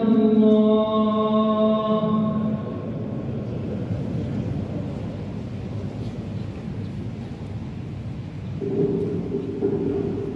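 Imam's chanted Quran recitation over the mosque loudspeakers, a long held note ending about two and a half seconds in. After a pause filled with hall noise, the chanting resumes on a held note near the end.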